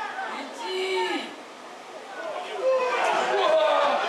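Voices shouting on a football pitch: one long drawn-out call about a second in, then a louder stretch of several voices shouting at once near the end as the attack reaches the goal.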